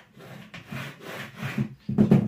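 Hard plastic power-drill housing and parts rubbing and scraping against each other as they are handled, in a few short scrapes.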